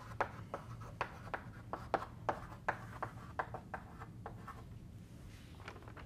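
Chalk writing on a blackboard: a quick run of short taps and scrapes as words are chalked, stopping about four and a half seconds in.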